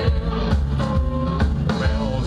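A live blues-rock band playing: electric guitars over a drum kit with a steady beat.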